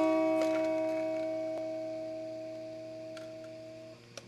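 Guitar chord left ringing and slowly dying away, with a few light plucked notes over it, cutting off near the end.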